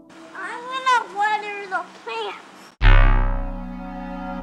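A young child's voice, a few short high calls that rise and fall in pitch. About three seconds in, a loud low musical chord starts suddenly and fades away.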